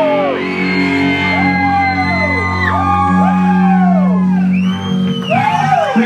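Live rock band letting a held final chord ring on electric guitars and bass while people whoop and yell over it. The chord dies away about five seconds in, and the yelling goes on.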